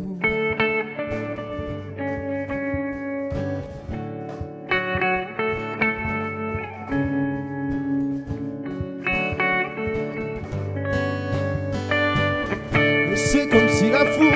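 Instrumental break in a live song: an electric guitar plays a melodic lead of sustained, bending notes over an acoustic guitar accompaniment.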